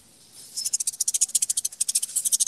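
Rapid, irregular high-pitched crackling clicks coming over a video-call participant's open microphone, starting about half a second in and continuing steadily.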